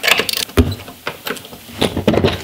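A wrench working on hold-down bolts inside a cardboard box: rustling and metal clicks, with one dull knock about half a second in and a few scattered clicks after it.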